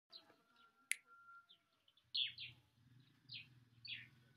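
Faint bird chirps: a few short calls, each falling in pitch, with a single sharp click about a second in.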